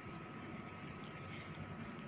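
Faint steady background hiss (room tone) with a thin, steady high tone running through it.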